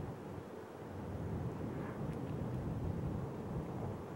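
Wind buffeting the microphone: a steady low rumble, with a few faint high chirps about two seconds in.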